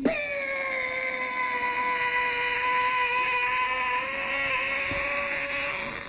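A steady high-pitched tone that starts abruptly, holds for about six seconds with only a slight waver in pitch, and then stops.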